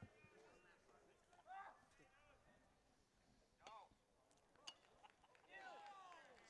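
Near silence with faint distant voices calling out in a few short calls, and one faint sharp click about four and a half seconds in.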